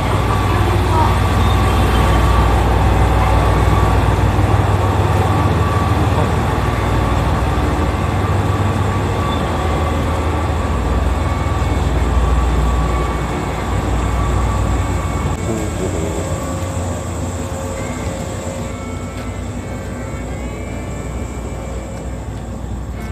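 A JR 381-series electric express train running past along the platform: a loud, heavy rumble of wheels and running gear that eases off gradually after about thirteen seconds as it moves away.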